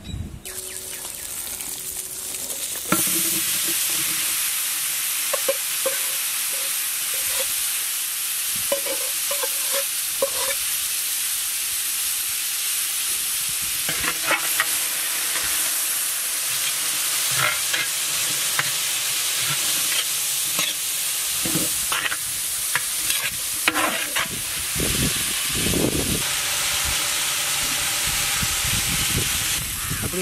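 Sliced shallots and dried red chillies frying in a large metal pot: a loud, steady sizzle that sets in about three seconds in, with scattered scrapes and knocks as they are stirred.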